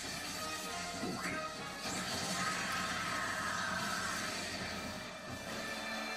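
Anime soundtrack with sustained background music and a noisy crash-like sound that swells about two seconds in and fades out a little before the end.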